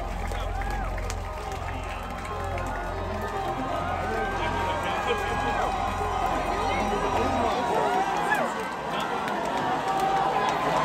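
Concert crowd talking and shouting between songs, over a low pulsing bass drone from the PA that stops about three-quarters of the way through.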